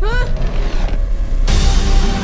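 Trailer soundtrack: a brief rising creak at the start over a heavy low rumbling music bed, which swells into fuller music about one and a half seconds in.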